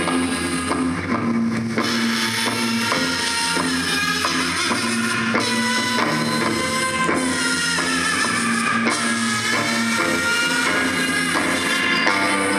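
A band playing live: guitar and drum kit, with drum hits at a steady pulse under sustained guitar notes.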